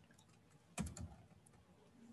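Faint typing on a computer keyboard: a few soft key clicks, with a short cluster about a second in.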